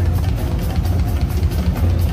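Live band music heard from within the crowd: a drum kit keeping a steady beat over a heavy, booming bass line.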